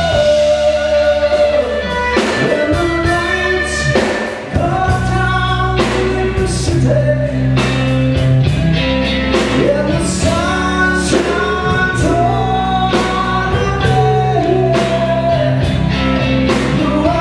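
Live rock band playing a song: electric guitar, bass guitar and drum kit with cymbals, with a lead melody line over them. The band drops out briefly about four seconds in, then plays on.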